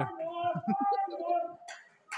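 Spectators' voices calling out in the arena, one drawn-out call held for about a second and a half and then fading.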